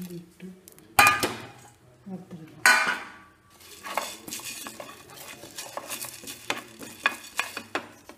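Dry coriander seeds rattling and scraping in a non-stick frying pan as they are dry-roasted and stirred with a wooden spatula. Two louder clatters come about a second in and near three seconds, followed by a run of quick scrapes and ticks.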